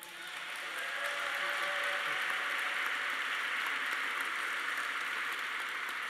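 Audience applauding, swelling over the first second, then steady, easing off slightly near the end.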